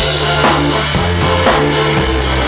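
Live rock band playing: a drum kit on a steady beat, with stick and cymbal hits about two or three times a second, over bass and guitar.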